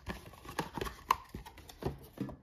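A cardboard booster bundle box being handled and opened by hand: scattered light taps and scrapes of card against card, with faint rustling.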